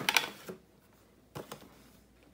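Cardboard packaging being handled: a brief scrape and rustle as a card insert is lifted from a box, then a couple of light taps about a second and a half in.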